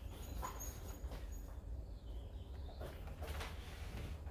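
A few faint, short strokes of a paintbrush dragging oil paint across a stretched canvas, over a low steady hum.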